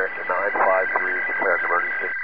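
A man's voice heard through a narrow-band two-way radio, continuing a mayday distress call, with two steady high tones running under it. The transmission stops just before the end.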